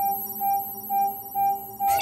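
Five short electronic beeps, all on the same pitch, about two a second. Each beep marks another block appearing on an on-screen bar chart as it counts up by tens to 50.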